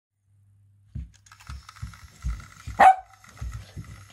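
A small dog barks once, sharply, near three seconds in, between soft low thuds of its paws bouncing on a rug as it play-bows at a toy train, with the faint whine of the battery-powered toy train's motor underneath.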